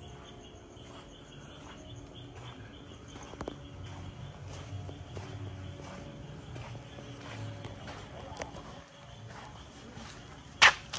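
Quiet footsteps on a dirt yard with a few sharp clicks, over a faint, steady chirping of night insects.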